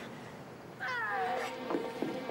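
A woman's single high cry, falling in pitch over about half a second, a cry of labour pain.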